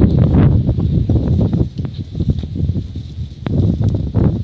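Strong gusty wind buffeting the microphone: a loud, uneven low rumble that rises and falls, with a couple of sharp clicks near the end.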